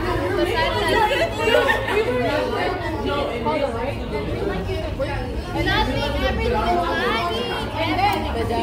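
Several young women chatting, their voices overlapping without pause, over a low steady rumble.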